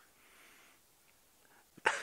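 A quiet pause with faint hiss, then a short, sharp intake of breath near the end.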